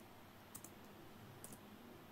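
Faint computer keyboard keystrokes: two pairs of soft key clicks about a second apart, over near-silent room tone.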